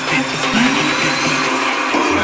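Build-up section of an electronic dance track: a loud hissing noise sweep with gliding synth tones and the bass dropped out.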